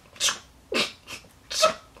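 A woman's stifled, breathy laughter: three short puffs of breath spaced over about a second and a half.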